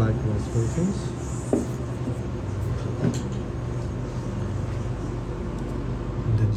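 A steady low hum with a few brief, faint voice-like murmurs in the first few seconds.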